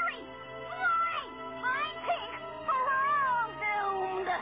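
Wordless cries from children's voices in a cartoon, gliding up and down in pitch as they exclaim in surprise and excitement, over background music with sustained notes.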